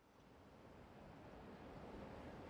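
Faint city street traffic noise, a steady hiss that swells as a car drives close past.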